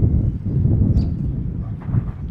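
Wind buffeting the microphone outdoors: a loud, uneven low rumble with no speech, and a faint short high chirp about a second in.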